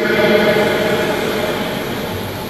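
A sustained musical chord held under the preaching, steady and slowly fading, in the manner of a church keyboard or organ pad.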